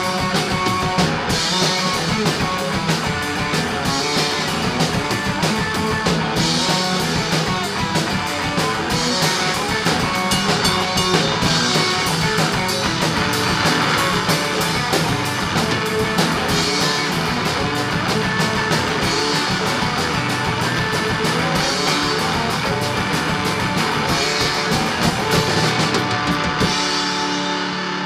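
Three-piece rock band playing live: electric guitar, bass guitar and drum kit together in a loud, steady full-band passage.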